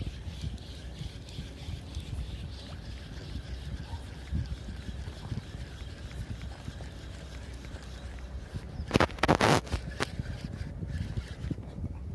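Steady low rumble of wind on the microphone by open water, with a cluster of short, loud rustling and bumping noises about nine seconds in as the phone is handled.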